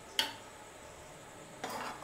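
A spatula strikes the rim of an aluminium cooking pot once with a sharp clink, then scrapes briefly against the pot near the end while stirring the simmering khichuri.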